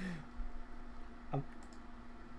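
A few faint clicks in the middle, after a short vocal sound at the start, over a steady faint hum.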